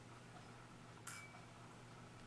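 A single light metallic clink about a second in, with a brief high ring, from small metal parts of a brass anniversary clock movement knocking together as it is worked loose from its base.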